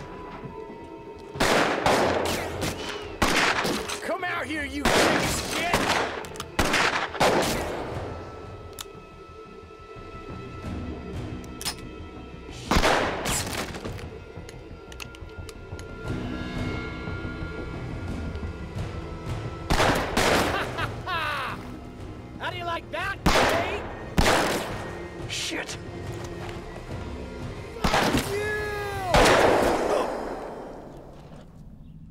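Gunfight in a film soundtrack: clusters of gunshots, each with a ringing echo, break out again and again. Quieter stretches of dramatic score fill the gaps.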